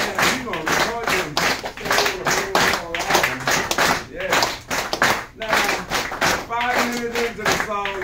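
Hand claps and taps keeping a steady beat, as a group clapping along to a church-style rhythm, with a voice holding long notes near the end.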